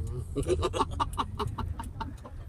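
A quick run of about ten short, pitched clucking calls in quick succession, over the low steady hum of the car's engine.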